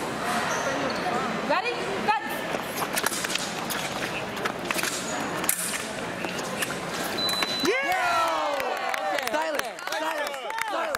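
Sabre fencing action in a large hall: quick footwork squeaking and slapping on the piste with sharp clicks of blades. About seven seconds in a short high beep sounds as a touch is scored, followed by loud shouting and yelling.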